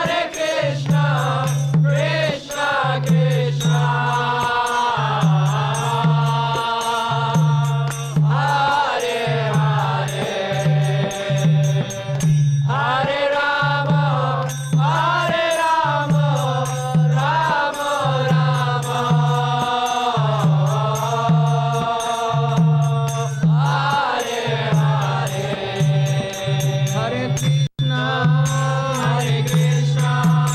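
Devotional kirtan: singers chanting a mantra to a melody, over a low percussion beat about twice a second.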